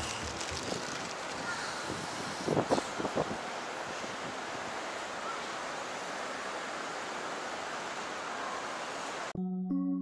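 Steady wind noise on the microphone, with a few brief louder bumps about three seconds in. Background music with sustained notes cuts in near the end.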